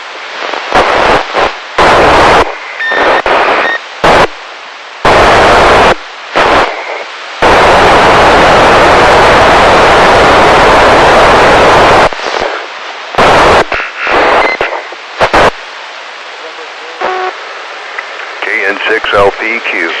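Icom ID-5100 receiver on the TEVEL-5 satellite's FM downlink: loud bursts of FM static switching on and off, the longest lasting about four seconds in the middle, as weak signals fade in and out. Near the end a garbled, warbling transmission breaks through the noise.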